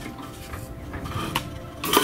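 A few faint metallic clicks, then near the end a louder clatter as an engraved wooden sign is set down on a perforated metal laser-engraver bed.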